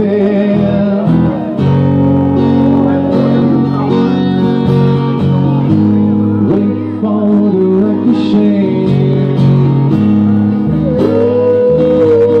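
Live band music: an acoustic guitar strummed over bass guitar notes that change every second or so. A wavering melody line comes in near the start and again near the end.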